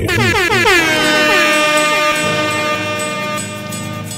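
Synthesized horn-like sweep from a radio show jingle: a loud chord of tones that falls steeply in pitch over the first second, then is held steady and fades away.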